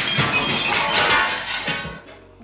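A large pane of old 1960s untempered plate glass shattering, crashing down and tinkling for nearly two seconds before fading. It breaks out in big, sharp chunks rather than small pieces, the kind of breakage that could cut someone standing underneath.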